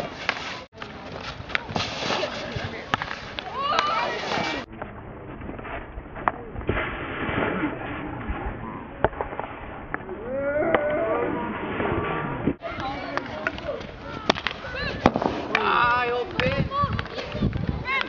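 Sharp cracks of a field-hockey ball struck by sticks and hitting a goalkeeper's pads, among people talking and calling out on the pitch. The sound turns duller for a stretch in the middle.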